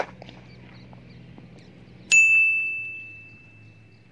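A sharp crack of a cricket bat striking the ball right at the start. About two seconds in comes a single loud, bell-like ding that rings on and fades away over nearly two seconds.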